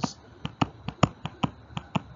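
A stylus tapping and clicking on a tablet screen while numbers are handwritten: about ten short, sharp clicks at uneven intervals.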